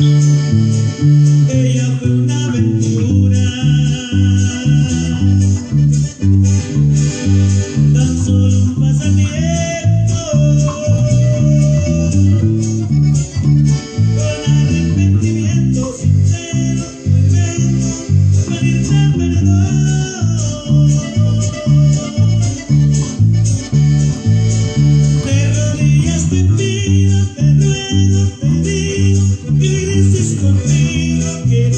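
Electric bass guitar playing a steady, rhythmic bass line along with a recorded band track of the song, with a higher melody line above it.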